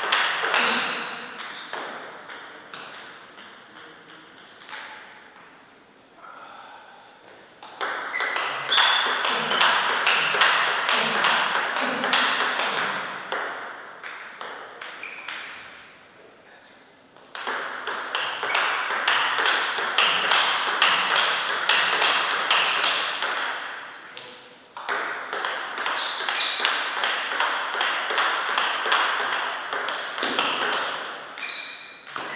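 Table tennis rallies: the ball clicking in quick, even succession as it bounces on the table and is struck by the paddles. Several rallies run a few seconds each, with short pauses between points.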